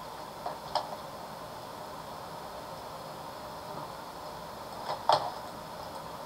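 Low steady hiss of room tone with two brief clicks, a faint one about a second in and a louder one near five seconds in.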